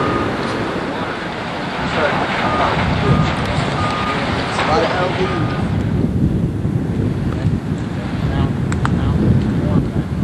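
Heavy earthmoving equipment at work: a backup alarm beeping in short, evenly spaced tones over a steady low engine rumble. The beeps stop about halfway through, leaving the rumble and wind noise on the microphone.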